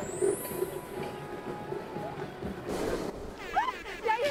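Variety-show soundtrack playing back: a rising, chime-like sound-effect sweep at the start, then a steady background rumble, with brief women's voices exclaiming near the end.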